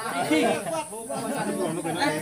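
Several men's voices talking over one another, speech that is not made out as words.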